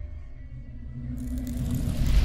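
Cinematic logo-sting sound effect: a low rumble under a faint held tone, then a rushing hiss that comes in suddenly just past a second in and builds.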